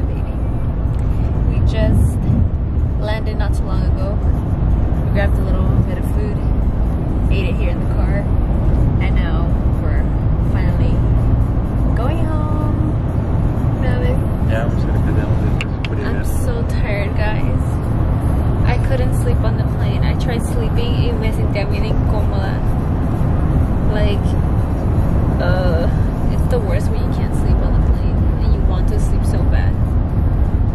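Steady low rumble of a car on the move, heard from inside the cabin, with quiet talking over it.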